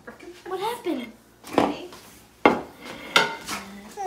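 Dishes and cutlery clattering in three sharp knocks, the last one ringing briefly.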